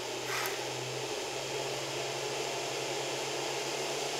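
Steady whir of fans with a low electrical hum from a space heater and a 1500 W pure sine inverter running under about 1100 watts of load, with a brief click about half a second in.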